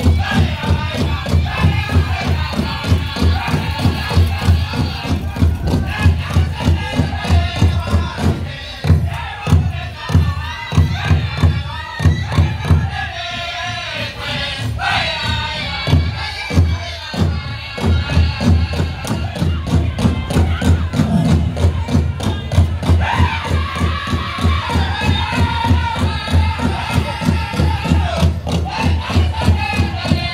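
Powwow drum group singing a fancy shawl contest song: a big drum struck in a steady beat under high-pitched group singing. The singing thins out for a few seconds in the middle, with a high rising-and-falling cry, then comes back strongly.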